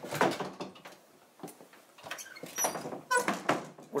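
White louvered bifold pantry doors pushed shut on their track with a wooden clack at the start, followed by a few light clicks and a short squeak near the end.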